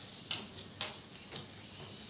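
Three short, sharp ticks about half a second apart, over quiet room tone.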